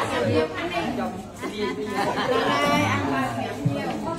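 Several people talking at once in a crowd, with background music underneath.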